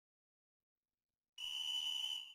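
Digital silence, then about a second and a half in a single steady high-pitched electronic beep starts, a sound effect cueing "stop", that runs about a second and fades out.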